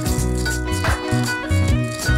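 Electric guitar playing over a loop-pedal backing: a low bass line moving in short notes, with a steady rattling shaker-like percussion pattern.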